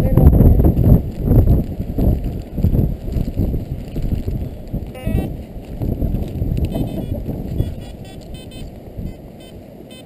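Wind buffeting the camera microphone as a low, irregular rumble, heaviest in the first two seconds and easing off after about eight. A few faint, short, high beeps from the metal detector come through around the middle.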